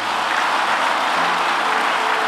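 An audience applauding: many people clapping in a dense, steady patter that swells in just before and fades soon after.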